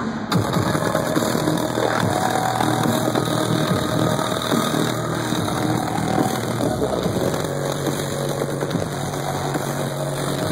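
Loud live bass-heavy electronic music played over a concert sound system, heard from within the crowd, with a steady deep bass line under it.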